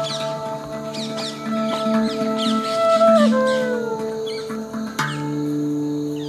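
A transverse flute plays a slow, sliding melody over sustained drone tones, with birds chirping throughout. About five seconds in, the held drone tones change to a new set.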